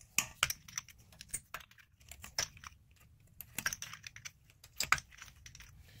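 Plastic lug bolt caps being pried off an alloy wheel with a small wire hook tool: a series of sharp, irregular clicks and snaps, about half a dozen of them.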